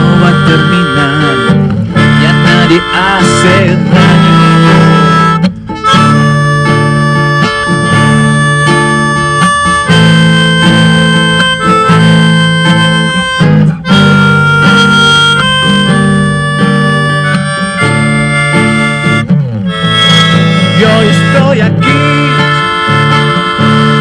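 Harmonica playing a melody of long held notes over a strummed acoustic guitar, with two short breaks between phrases.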